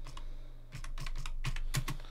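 Computer keyboard keys clicking in a quick run of keystrokes as a short terminal command is typed. There is a brief pause in the first second, then a faster burst.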